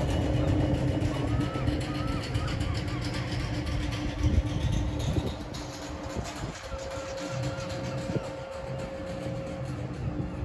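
Standing SNCF TGV power car humming steadily, with its cooling fans and on-board equipment running: a low rumble under two held tones.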